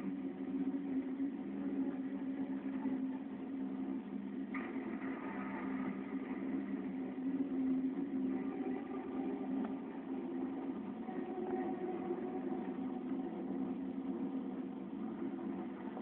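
Steady, low car engine and road hum heard from inside a moving car's cabin.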